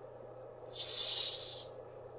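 Screw cap of a plastic bottle of black cherry sparkling water twisted open, the pressurised carbonation escaping in one hiss about a second long, starting just under a second in.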